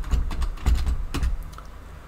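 Computer keyboard being typed on: a quick, uneven run of key clicks with soft thuds, as a calculation is keyed in, easing off near the end.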